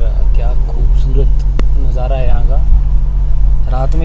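Steady low rumble of a car driving slowly, heard from inside the cabin, with voices talking over it in short bursts. A single sharp click comes about one and a half seconds in.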